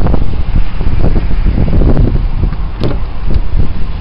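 Wind buffeting the camera's microphone: a loud, fluttering low rumble. A sharp click about three seconds in as the pickup's driver door is unlatched and opened.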